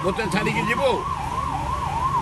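Emergency vehicle siren in a fast yelp, its pitch rising and falling about three to four times a second without a break.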